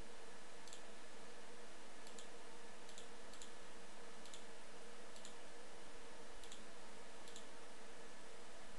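Computer mouse button clicking: single short clicks about once a second as form fields are selected, over a steady hiss.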